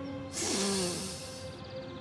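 A cartoon character takes one long, deep breath in, savouring fresh air, with a short low hum that falls in pitch. Soft sustained background music plays underneath.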